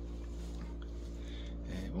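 Steady low hum of a room air conditioner running.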